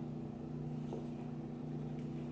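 A steady low hum, faint, with a small click about a second in.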